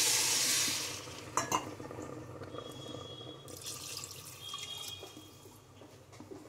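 Water poured from a steel bowl into a steel pressure cooker of fried rice, lentils and potatoes, splashing loudest in the first second and then dying away to a quieter trickle. Two short clicks come about a second and a half in. This is the water going in for the khichdi's pressure-cooking stage.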